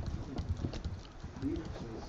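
Faint, irregular clicks over a low steady room hum, with a brief low voice sound about one and a half seconds in.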